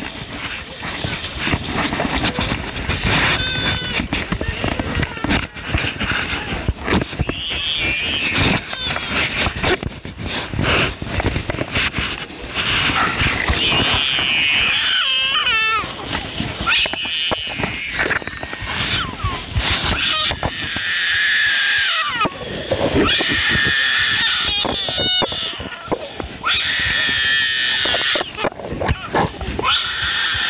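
Young children crying, loudest in the second half, over a hubbub of voices. Close by, a foil emergency blanket crinkles as it is unfolded and wrapped around someone.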